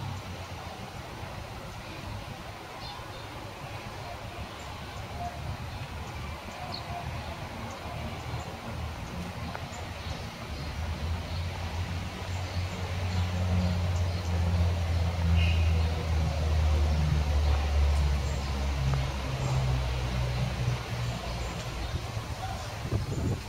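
Outdoor street ambience with a motor vehicle engine rumbling low, building about halfway through, holding steady, then easing near the end.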